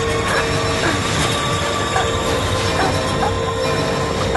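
Tense, dark soundtrack music: a steady drone over a dense rumbling wash, with short squealing glides scattered through it.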